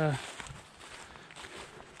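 Faint footsteps through dry fallen leaf litter, irregular soft rustles and crunches.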